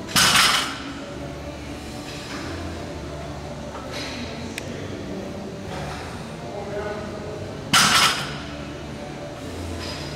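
Loaded barbells with 45-lb iron plates clanking down onto the gym floor at the end of deadlift reps, twice, about eight seconds apart, each a sudden metallic bang with a short ring.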